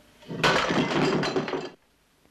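A vase smashing: a sudden crash and a spray of breaking shards lasting just over a second, which cuts off abruptly.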